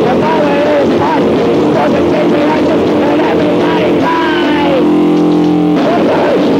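Lo-fi band demo recording: a shouted voice over loud, noisy distorted electric guitar. About five seconds in the voice stops and a single guitar chord rings for about a second.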